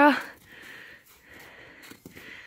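A horse breathing and snuffling softly at close range, two faint breaths about half a second each, as its muzzle comes right up to the microphone.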